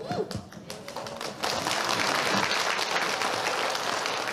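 Theatre audience applauding, the clapping swelling in about a second and a half in and holding steady.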